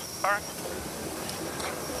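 A brief spoken word about a quarter of a second in, then a steady low hiss of background noise.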